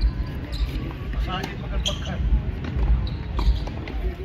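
Tennis rally on a hard court: sharp knocks of the ball off the rackets and the court, several spread over a few seconds, with voices in the background and a steady low rumble.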